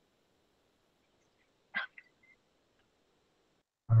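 One short animal call just under two seconds in, over a faint steady line hiss.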